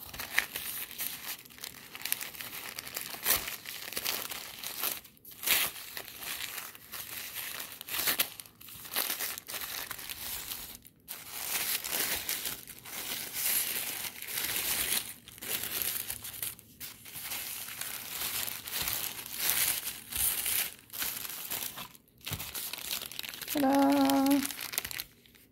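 Tissue paper crinkling and rustling in uneven surges as it is pulled open and unfolded by hand from around a small package.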